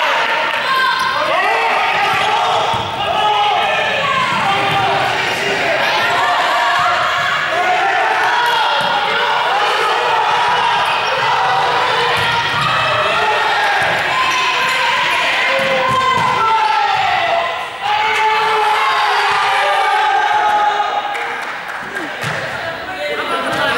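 Group of players calling and shouting over one another during a running ball game, with a ball striking the floor and hands and footsteps on the wooden court, echoing in a large sports hall.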